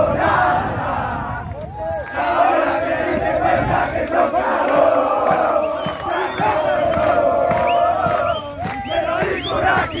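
A group of footballers chanting and shouting together in a celebration huddle after winning, with a few high shouts in the second half.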